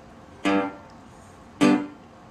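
Metal-bodied resonator guitar in open G tuning: two single picked notes about a second apart, each with a sharp attack that rings briefly and dies away.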